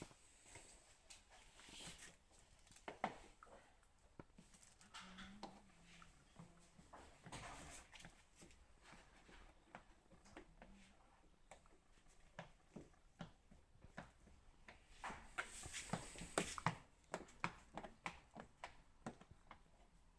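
Faint handling noise from hands working window-tint film and trim at a car's rear glass: scattered light clicks, taps and rustles, with a quicker run of sharper taps about fifteen seconds in.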